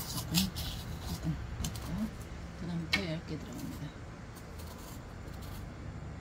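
Knife shaving the rind off a firm apple-melon (a Korean melon), with short crisp cutting strokes and a sharper one about three seconds in.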